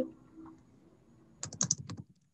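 A short run of computer keyboard typing, five or six quick keystrokes about a second and a half in, heard over a video call's audio.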